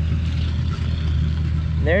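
Tractor engine running steadily, an even low drone with no change in speed.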